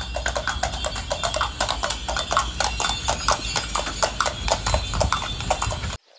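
Hooves of a pair of carriage horses clip-clopping at a walk on cobblestones, a continuous run of quick, uneven strikes.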